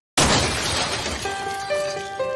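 A sudden crash with shattering glass that breaks in out of silence and dies away over about a second, as steady musical notes of an intro theme come in beneath it.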